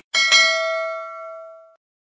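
Notification-bell ding sound effect for a subscribe-button bell icon. The bell is struck twice in quick succession near the start, then rings on in a few clear tones that fade out over about a second and a half.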